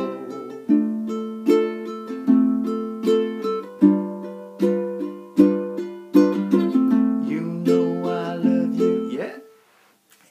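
Ukulele strummed at full speed through the closing line of the chorus: firm chord strums a little under a second apart, each left to ring, moving through C, D minor and F to a run of single down strums on G7. The strumming stops and dies away shortly before the end.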